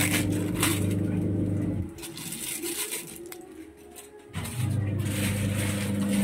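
Plastic packet crinkling and rustling as masala is shaken into a pan of boiling Maggi noodles. A steady low hum runs under it for the first two seconds and comes back about four and a half seconds in.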